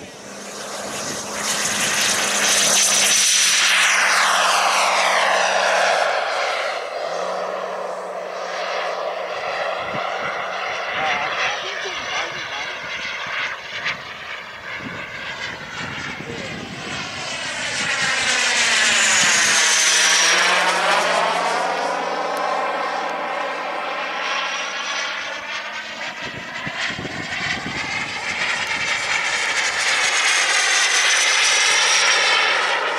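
Radio-controlled model jet's engine, a loud high whine that rises sharply as it powers up and takes off. It then makes two loud passes overhead, the second with a clear falling pitch as it goes by.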